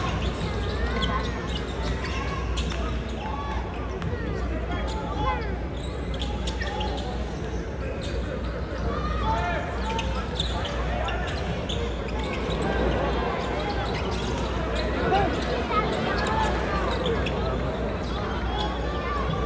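Live basketball heard from the arena stands: the ball bouncing on the hardwood court and short sneaker squeaks over steady crowd chatter.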